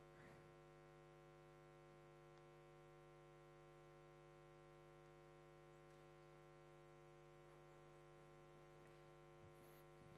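Near silence: only a faint, steady electrical mains hum.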